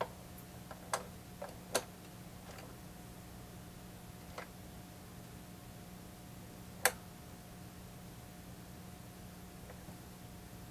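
Light clicks from the auto-function trigger and record-size feeler mechanism under the removed platter of a Technics SD-QD3 turntable as it is worked by hand. Several come in the first two seconds, one about four and a half seconds in, and the sharpest near seven seconds.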